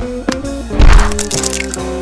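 Background music with a loud crack-like hit just under a second in, the kind of comic impact effect laid over a slapstick knock-down.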